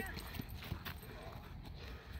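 A large dog's paws tapping faintly on dry grass as it walks, a few soft footfalls over a steady low wind rumble on the microphone.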